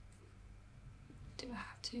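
Faint room tone, then a short quiet whispered vocal sound about one and a half seconds in, with a second brief one just before the end.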